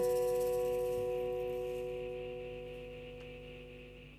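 Final strummed chord on acoustic guitar ringing out, several held notes fading slowly and evenly away.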